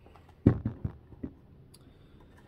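A single knock about half a second in, then a few lighter clicks: a lamp's metal piston and parts handled and set down on a wooden workbench.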